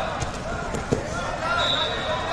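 Dull thumps of wrestlers' bodies hitting the foam wrestling mat during a takedown, the loudest a little under a second in. Shouting voices echo in a large hall, and a steady high tone sounds near the end.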